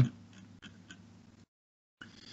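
A few faint, evenly spaced clicks over low hiss, then the audio drops to dead silence about a second and a half in.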